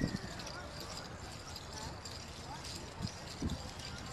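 Clogging shoes' metal taps clicking irregularly on a wooden stage as dancers walk into position, with faint voices behind.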